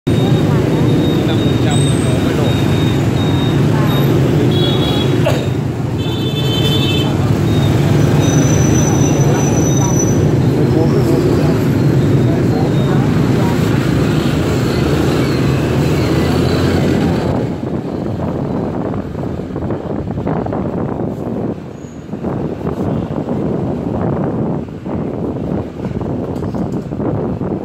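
Dense scooter and motorbike traffic: many small engines running together with voices, and a few short horn beeps about five to seven seconds in. About two-thirds of the way through the din drops away, leaving a single motorbike running and the passing street as the traffic opens up.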